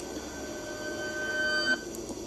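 A steady whining tone with a few higher overtones, growing slightly louder and then cutting off suddenly near the end.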